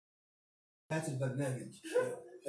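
A gap of total silence for about the first second, then a man speaking.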